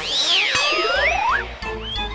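Comic sound effects in a TV serial's background score: swooping whistle-like pitch arcs, then a steadily rising glide, and near the end a long high held tone.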